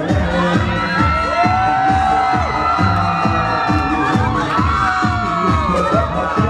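Dance music with a steady beat of about two a second, over a crowd of party guests cheering and shouting.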